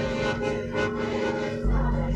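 Experimental electroacoustic music: sustained accordion tones layered with sampled and effected electronic sounds. A deep low rumble swells in near the end.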